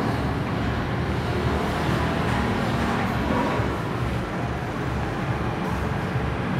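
Steady background noise with a low rumble.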